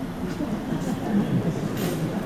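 Murmur of a large seated audience, many voices talking at once.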